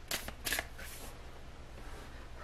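Tarot cards being handled as a card is drawn from the deck: three or four quick papery flicks in the first second, then only faint room sound.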